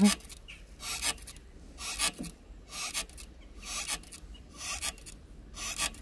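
Outdoor elliptical cross-trainer being pedalled, a rasping scrape with each stroke, about once a second.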